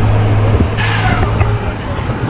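Road vehicle engine running close by with a steady low hum that fades near the end, and a short hiss about a second in, over a few voices.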